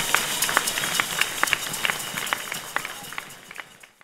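Audience applauding, many quick overlapping claps, fading out steadily to silence near the end.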